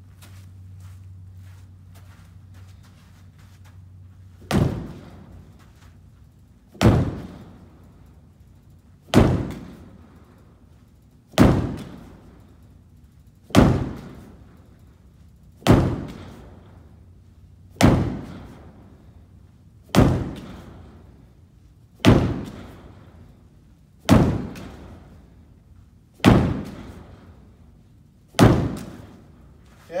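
Green weighted ball slammed against a plywood wall in a wall-slam drill: twelve heavy thuds about every two seconds, starting a few seconds in, each with a short echo in the room.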